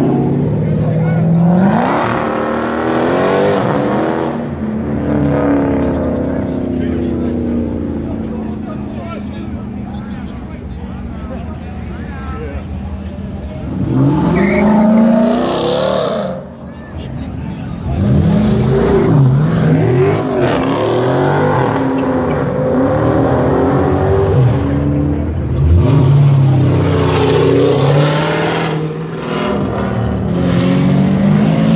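V8 muscle cars, including a Dodge Charger and a Ford Mustang, accelerating hard away one after another, engines revving up in several separate bursts: one at the start, one about halfway and more near the end. Crowd chatter runs underneath.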